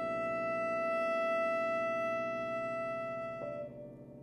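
Cello and piano in a soft, slow passage: the cello holds one high, steady bowed note over the lingering resonance of a piano chord. About three and a half seconds in, the held note gives way to a slightly lower one and the sound grows quieter.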